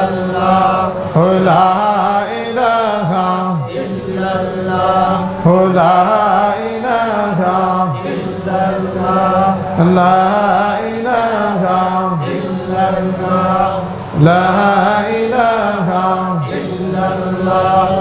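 A man chanting Sufi zikr solo in a melodic voice. Long drawn-out phrases rise and fall over a steady low drone.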